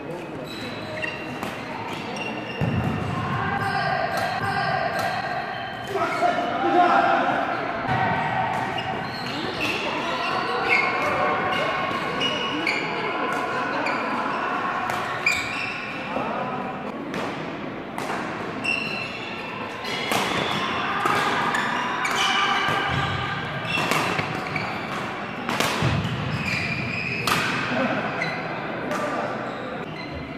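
Sharp racket strikes on a shuttlecock during a doubles badminton rally, with shoe squeaks and footwork on the court floor, echoing in a large sports hall. Voices are heard throughout.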